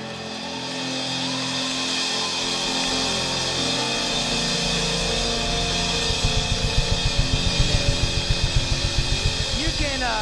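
Congregation applauding and cheering over sustained chords from the worship band. A fast, even drum beat comes in about six seconds in.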